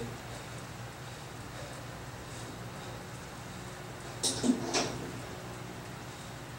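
Steady hum of electric fans running, with two short hissy noises about four and a half seconds in.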